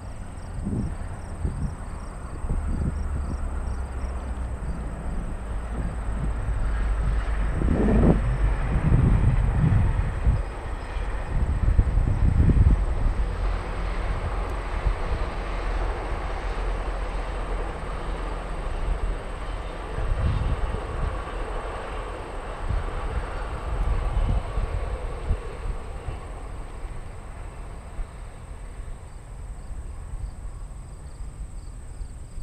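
Wind buffeting the microphone in irregular low thumps, over a distant rumbling noise that builds and fades over about twenty seconds. Crickets chirp faintly near the start and end.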